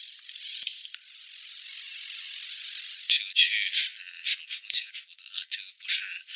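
A voice talking, sounding thin and tinny with all the low end missing, after a steady hiss of about two seconds starting about a second in.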